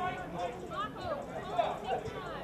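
Several voices calling and shouting across an open sports field, overlapping and indistinct.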